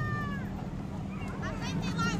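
High-pitched voices calling out, with one long falling call at the start and quick squealing calls near the end, over a steady low rumble.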